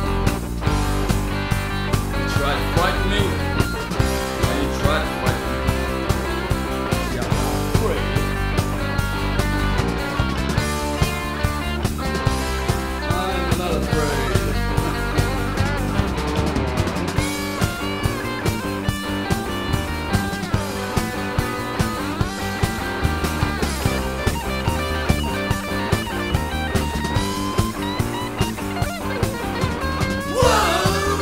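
Alternative rock recording from the early 1990s: a band playing a guitar-led passage over a steady drum beat.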